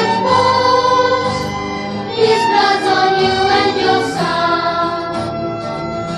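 School choir of young voices singing with a small youth ensemble accompanying, in two long held phrases; about four seconds in the singing drops back and the accompaniment carries on more softly.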